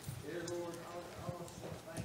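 A faint, off-mic voice in a quiet room, with scattered light knocks and handling sounds.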